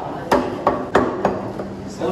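Meat cleaver chopping mutton on a wooden tree-stump chopping block: five sharp chops in quick succession, about three a second.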